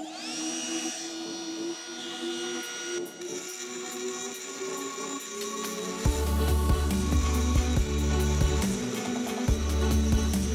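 Cordless Dremel rotary tool spinning up with a rising whine, then running at high speed as its bit grinds dripped glaze off the foot of a stoneware mug. About six seconds in, music with a heavy bass beat comes in over it.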